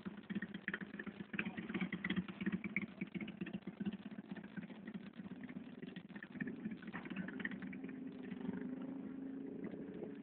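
A motorcycle engine idling steadily, its note settling and becoming more even in the second half.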